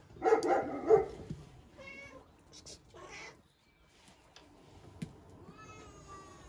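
Animal cries: a loud pitched call in the first second, then shorter calls about two seconds in and near the end, the last one rising and then falling.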